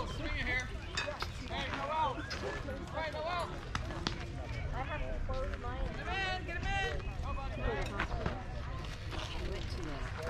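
Indistinct, overlapping voices of children and spectators chattering and calling out around a youth baseball field, over a low steady rumble.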